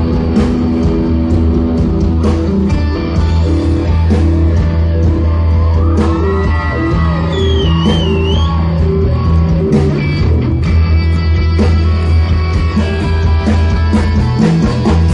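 Live rock band playing an instrumental passage: electric guitars over a steady bass line and drums, with bent guitar notes about halfway through.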